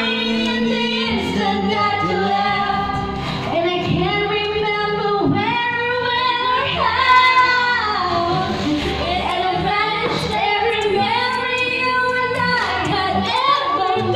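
A woman singing videoke through a microphone over a karaoke backing track, holding long notes.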